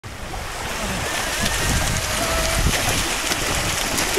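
Wind buffeting the microphone over the wash of gentle surf on the shore, with feet splashing through shallow seawater.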